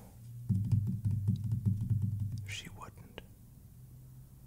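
Fast typing on a computer keyboard, a rapid run of key clicks lasting about two seconds, followed by a brief whispered mutter.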